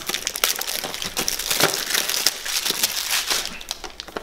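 Cellophane shrink-wrap being peeled and pulled off a cologne box by hand: a continuous run of crinkling and crackling that eases off slightly near the end.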